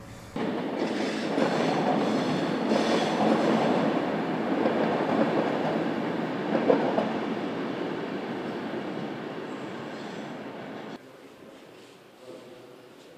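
A passing train: a loud, steady rush of noise that starts suddenly, slowly fades over several seconds, and stops abruptly about a second before the end.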